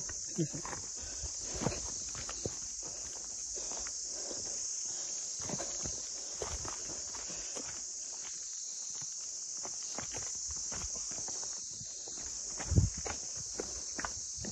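Footsteps of a person walking on a mountain trail: irregular steps with a louder thump near the end, over a steady high hiss.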